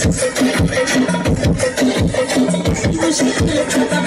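Dance music with a fast, steady beat and short repeating bass notes.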